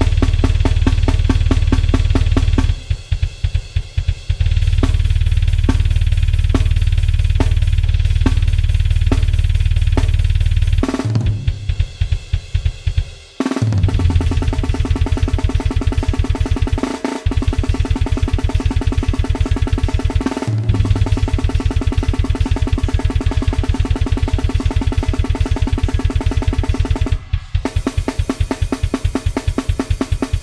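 Programmed grindcore drum track at 280 bpm played on a sampled virtual drum kit: fast blast beats of kick, snare and cymbals with continuous rapid kick drum. The kick drops out briefly about three seconds in. A falling tom fill comes about eleven seconds in, with shorter fills later.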